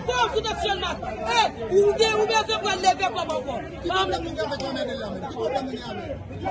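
Speech only: a woman talking without pause in an excited, high-pitched voice.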